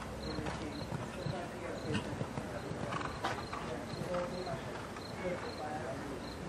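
Hoofbeats of a horse cantering on a dirt arena footing, with a few louder strikes. A faint high chirp repeats about twice a second behind them.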